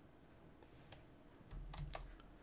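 A few faint clicks of computer keys, with a soft low thud near the end.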